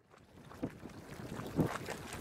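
Marmot Cave Geyser's full pool gurgling and sloshing in irregular low surges, fading in at the start, with the strongest surge near the end.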